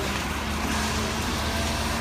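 NABI 60-BRT articulated bus's Cummins-Westport ISL-G 8.9 L natural-gas engine idling steadily, with a low, even hum. Rain hisses over it.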